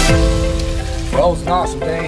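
Breaded walleye fillets sizzling in hot oil in a frying pan. Background music ends at the start, and a man's voice comes in about a second in.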